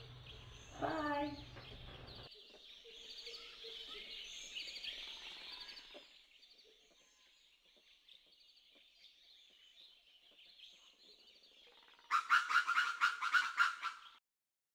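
Faint bird chirping, then over the last two seconds a loud, rapid run of animal calls, about five a second.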